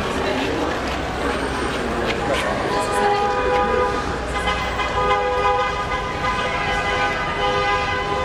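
A vehicle horn held in long honks, starting about three seconds in and sounding with brief breaks, over crowd chatter and traffic noise.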